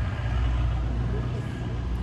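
A steady low rumble with a faint hiss above it, without speech.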